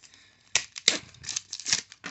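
Pokémon trading cards and a foil booster pack being handled: a quick string of short, crisp rustles and flicks.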